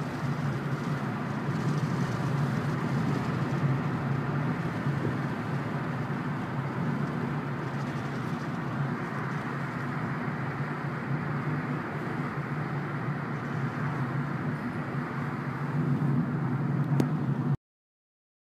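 Steady engine and tyre noise of a moving car, heard from inside the cabin. It cuts off suddenly near the end.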